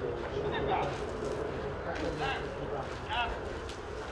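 Indistinct voices speaking a few short words over a steady low outdoor rumble.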